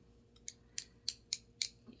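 A run of light, sharp clicks, about four a second, over a faint steady hum.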